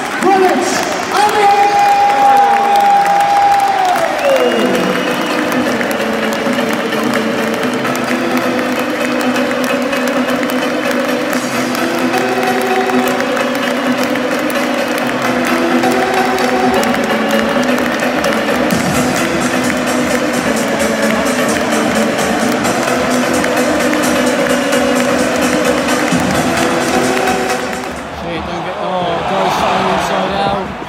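Music over a football stadium's public-address system with a large crowd in the stands. A long held note slides down about four seconds in, then a steady melody carries on, breaking off about two seconds before the end.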